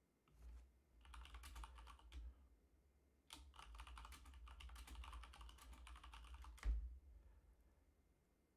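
Computer keyboard typing a terminal command: two runs of quick keystrokes, the second ending in a single harder stroke near the end.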